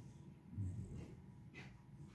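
A dog breathing and snuffling close to the microphone, with a short low bump about half a second in.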